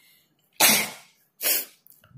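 Two sharp, noisy bursts of breath from a person, less than a second apart, the first louder.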